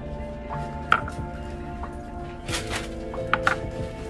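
Ceramic teacups knocking against each other and the plastic shopping-cart basket as they are set down: one sharp knock about a second in and several more near the end, over steady background music.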